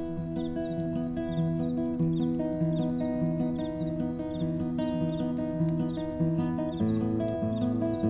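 Acoustic guitar playing an instrumental passage, a steady picked pattern of notes, moving to a fuller, lower chord about seven seconds in.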